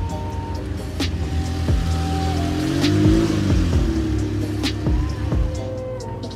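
1994 Jaguar XJ220's twin-turbo V6 engine driving past at low speed; its pitch rises and then falls, loudest about three seconds in. Background music plays over it.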